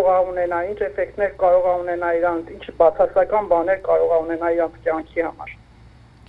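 Speech: a woman talking.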